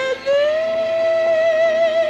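Female vocal ensemble singing with orchestral backing: a high voice slides up into one long held note with a slight vibrato just after the start.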